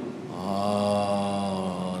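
A man's voice holding a long, drawn-out 'ha' on one steady pitch for about a second and a half, picked up through a lectern microphone.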